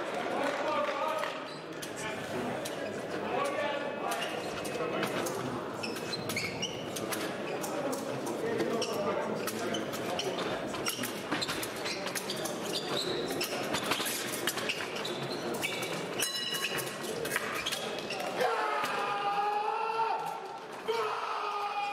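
Épée bout in a large hall: a steady run of sharp clicks and thumps from the fencers' footwork on the piste and their blades, under voices around the strip. A raised voice comes in near the end.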